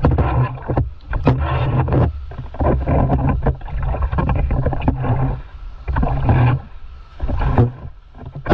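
Water splashing and rushing close to the microphone from paddle strokes and foamy whitewater as a stand-up paddleboard is paddled out through the surf. It comes in uneven surges about once a second, with heavy low wind buffeting on the microphone.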